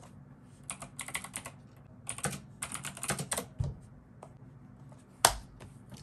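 Typing on a computer keyboard: two short runs of rapid key clicks, then one louder single click near the end.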